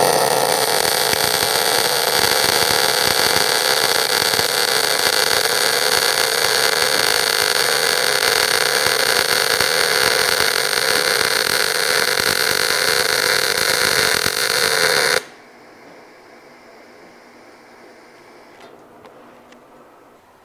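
MIG welding arc from a synergic inverter welder feeding 1 mm steel wire under mixed shielding gas, laying a fillet weld on 5 mm steel plate: a loud, steady arc noise that starts at once and cuts off suddenly about fifteen seconds in when the trigger is released.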